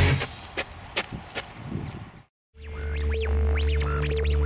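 Rock music cuts off, followed by a few faint clicks and a moment of silence. Then comes a radio-tuning sound effect: a steady hum and a held tone, with whistles sweeping up and down in pitch as if the dial were being turned across stations.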